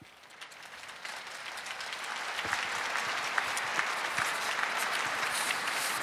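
Large crowd applauding, swelling over the first two seconds or so and then holding steady.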